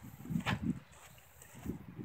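Footsteps through tall grass: a few soft thuds and rustles about half a second in and again near the end.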